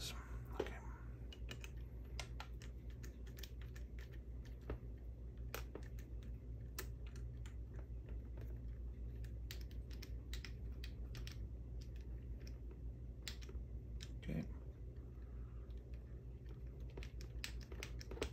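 Small irregular metal clicks and ticks of a hex nut driver turning the wheel nut on an RC crawler's rear axle, drawing the wheel hex onto the axle pin until it seats, over a steady low hum.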